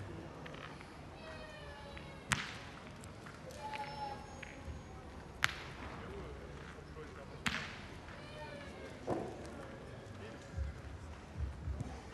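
Three sharp metallic clacks of steel pétanque boules striking, a few seconds apart, over a low murmur of distant voices.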